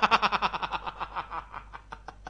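A man laughing: a long run of quick, even laugh pulses that fades away.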